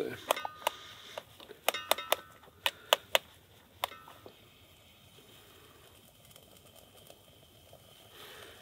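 A utensil stirring food in a metal camping cookpot on a camp stove, clinking against the pot about nine times with short ringing tones, from about half a second in until about four seconds in.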